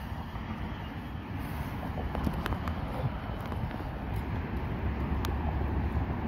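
Steady low wind rumble on the microphone outdoors, with a few faint footstep clicks on pavement.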